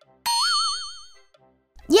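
A cartoon 'boing'-style sound effect: one wobbling pitched tone that starts about a quarter second in, warbles up and down several times, and fades away over about a second.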